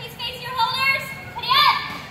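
High-pitched children's voices calling out in short bursts, with one sweeping call rising and falling in pitch near the end.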